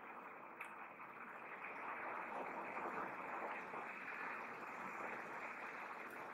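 Faint steady hiss of room noise, with a soft click about half a second in.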